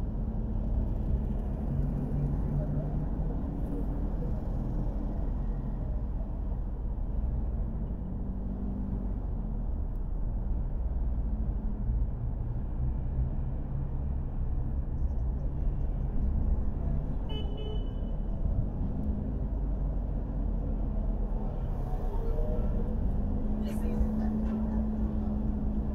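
A car driving at low speed on city streets: steady low road and engine noise whose pitch shifts up and down with speed. About two-thirds through there is a brief high beep.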